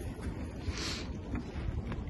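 Wind on the microphone, a steady low rumble, with a short hissing scrape a little under a second in.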